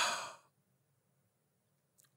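A man's short sigh, one breath out that fades away within about half a second.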